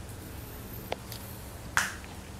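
Two sharp clicks: a faint one about a second in and a much louder, snappy one near the end.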